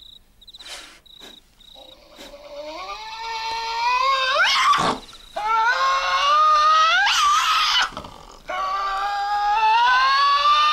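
Tasmanian devils screeching over a carcass: three long, drawn-out cries that rise in pitch. The first starts about two seconds in and builds in loudness; the other two follow close behind.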